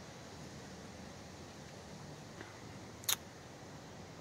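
Quiet, steady background noise with a single short, sharp click about three seconds in.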